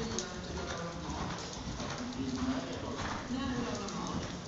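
Hoofbeats of a ridden grey pony on the sand footing of an indoor riding arena, a steady run of dull strikes, with a voice talking over them.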